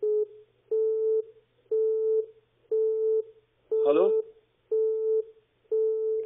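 Telephone busy tone: a steady beep switching on and off about once a second, half a second on and half off, heard over the phone line. It is the engaged signal of a number that cannot be reached. A single "Hallo?" is spoken over it about four seconds in.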